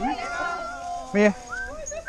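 A dog whining eagerly in one long high whine, with a single short bark about a second in.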